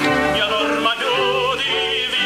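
Bel canto operatic singing from a tenor–soprano duet: sustained sung notes with a wide vibrato over instrumental accompaniment.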